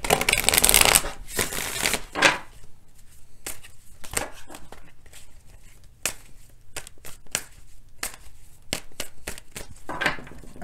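A deck of tarot cards being shuffled by hand: a dense burst of card flicking in the first second, then more shuffling and scattered quick clicks and taps of the cards.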